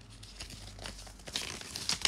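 Gift packaging being handled while unwrapping, crinkling and rustling in irregular crackles that grow busier and louder in the second half.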